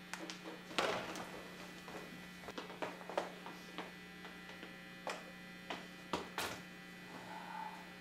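Steady electrical mains hum from the plugged-in guitar amplifier, with a few light knocks and clicks scattered through it as people move about the room.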